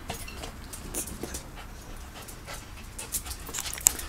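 A small long-haired dog panting in short, quick breaths, coming more often towards the end.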